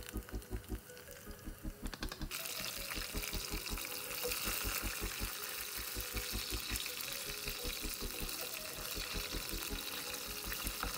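Hot oil sizzling as battered pieces deep-fry in a saucepan. The sizzle starts suddenly and grows loud about two seconds in, over background music with a steady low beat.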